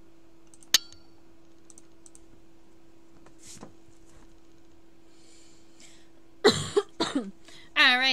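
A mostly quiet pause over a steady low hum, broken by one sharp click about a second in and a short, loud burst of noise about six and a half seconds in.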